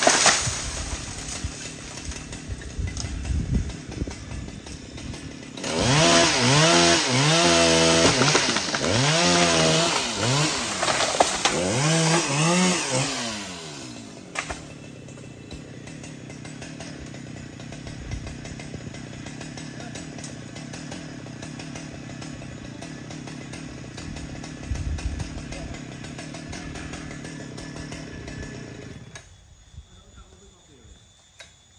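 Husqvarna 395 XP two-stroke chainsaw: a short burst of revving at the start, then revved hard in a series of rising and falling swells for about eight seconds. It then settles to a steady idle that drops away near the end.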